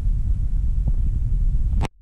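Steady low background rumble with no voice, cutting off abruptly with a click near the end.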